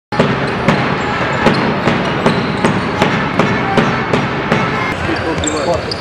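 Basketball dribbled on a hardwood gym floor, a steady run of sharp bounces about two and a half a second that stops near the end, over the murmur of voices in the hall.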